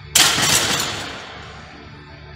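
A barbell loaded to 160 kg racked into the steel hooks of a bench rack. One loud metal clang comes a moment in, with the plates rattling and ringing out over about a second.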